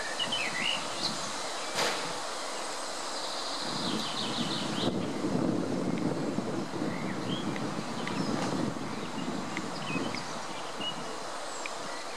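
Steady outdoor background noise with a low rumble, over which a few faint, short high bird peeps sound now and then and a brief rapid high trill comes about four seconds in. A single sharp click about two seconds in.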